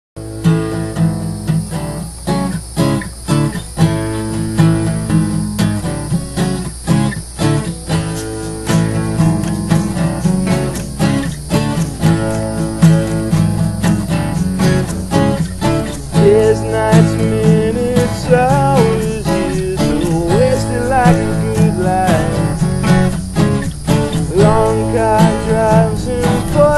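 Acoustic guitars strummed over an acoustic bass guitar, playing a song's instrumental intro in a steady rhythm. About two-thirds of the way in, a higher melody that bends in pitch comes in over the strumming.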